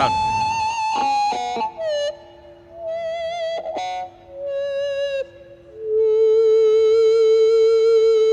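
Electric guitar through a DOD FreqOut feedback emulator pedal with its dry signal turned off, so only the emulated feedback sounds: a run of sustained, singing single notes with vibrato, almost like an EBow. Near the end a lower note swells up and is held, louder than the rest.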